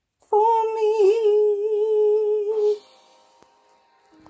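A woman's voice holding one long wordless note for about two and a half seconds, with a brief waver about a second in, then cutting off; faint sustained musical tones follow near the end.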